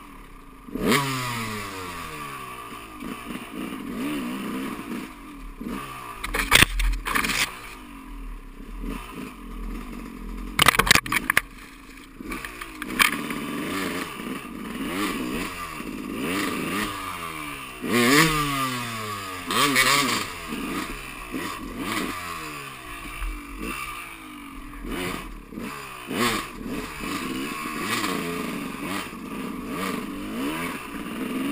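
Dirt bike engine revving up and falling back over and over as the rider works the throttle and gears on rough single-track. Several loud knocks and rattles break in as the bike bangs over bumps.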